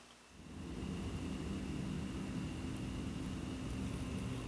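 A steady low mechanical hum, with a faint thin high tone above it, starting a moment in.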